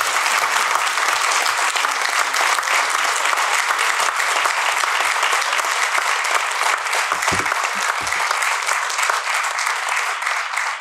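Audience applauding steadily, dense clapping from many hands that begins just before and thins out right after. Two short low thumps sound about seven and eight seconds in.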